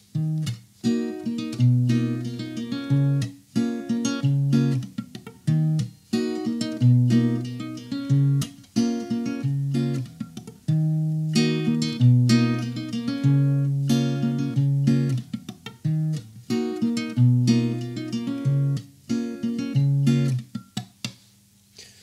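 Acoustic guitar played fingerstyle on a D-sharp minor shape at the sixth fret: bass notes on the low strings alternating with chords struck with the fingertips on the D, G and B strings, in a repeating rhythmic pattern. The playing stops near the end.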